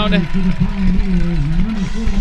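A man's voice holding one long drawn-out call: a sportscaster stretching out a touchdown call.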